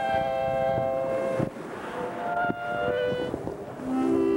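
Sustained electronic tones, like a held synthesizer chord, that change to a different held chord about a second and a half in.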